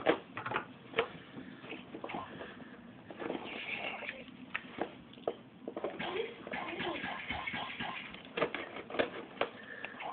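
A cardboard parcel and its wrapping being handled and opened by hand: irregular rustling, crinkling and sharp clicks.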